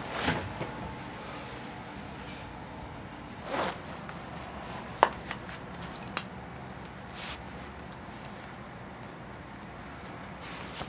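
Clothes being put on: fabric rustles and swishes, then two sharp metallic clicks about a second apart, about halfway through, as the brass buckle of a leather belt is fastened.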